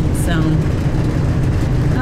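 Motorhome engine idling with a steady low hum while the vehicle stands stopped.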